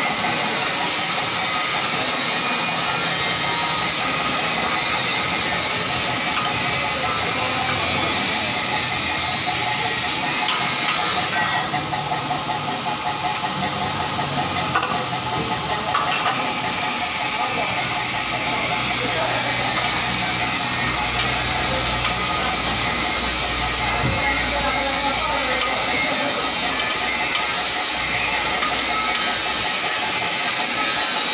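Steady, loud machine-shop din: a dense hiss of running machinery. The highest part of the noise drops away for a few seconds around the middle, and a low hum comes in during the second half.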